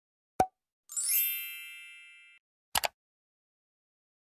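Intro sound effects: a short pop, then a bright shimmering chime that rings and fades over about a second and a half, then two quick clicks close together.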